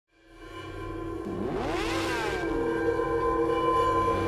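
Logo-intro sound design: a sustained drone fades in, and about a second and a half in, a whooshing sweep rises and falls in pitch through it, building toward the logo's musical hit.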